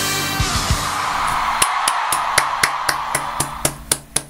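Audience cheering at the end of a live K-pop performance, fading out over the first three seconds. Hand claps come in about a second in and go on steadily at about four claps a second to the end.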